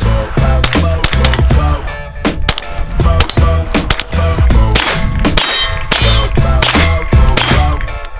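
Repeated shots from a Ruger PC Carbine in 9mm with steel targets clanging, mixed with background music that has a steady beat.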